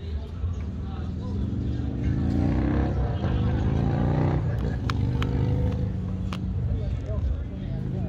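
A car engine revving, its pitch climbing steadily for about three seconds and then dropping off sharply as the throttle is released. A few sharp clicks follow.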